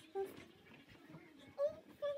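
A lone voice singing softly and unaccompanied: a short wavering note just after the start and another near the end, with a quieter gap between.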